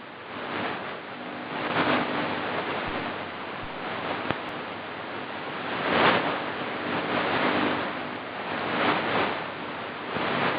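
Shortwave AM static and hiss from a Kenwood TS-50 receiver tuned to 12085 kHz, the noise swelling and fading every few seconds, with a faint low tone coming and going beneath it.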